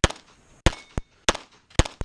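A semi-automatic pistol fired in quick succession, one shot about every half to two-thirds of a second. A fainter sharp crack falls between two of the shots.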